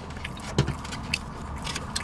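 Eating sounds: plastic forks clicking and scraping in foam takeout boxes, a handful of short sharp clicks scattered over a low steady hum.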